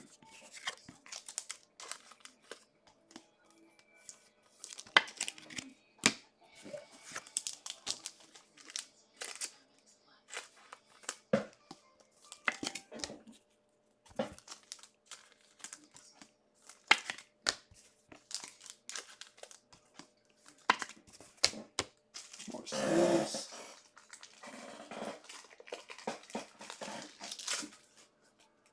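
Foil trading-card pack wrappers crinkling and tearing as packs are opened and cards handled. Scattered sharp crackles, with one longer, louder rustle a few seconds before the end.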